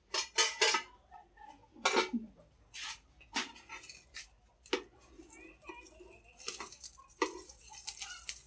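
Metal spatula knocking and scraping against a frying pan, along with the clatter of a metal plate and pot lid being handled: a string of irregular sharp clinks and knocks.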